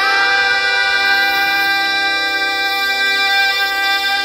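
Music in an Indian style: one long held note over a steady drone, with wavering ornamented runs just before and after it.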